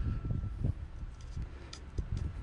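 Irregular low rumbling and thumps of footsteps and handling noise as a person walks around carrying the recording camera, strongest in the first half-second and again near the end.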